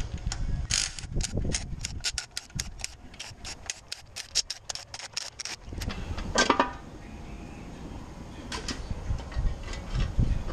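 A cordless drill-driver backing out the oil pan bolts on an engine block, a quick run of sharp, even clicks about five or six a second. It stops a little before halfway through, followed by a louder clatter as the cast aluminium oil pan is worked loose, and a shorter one later.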